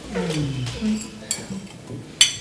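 A man's voice making a drawn-out, wordless sound that falls in pitch, then a short hum. A light clink of tableware comes about a second and a half in.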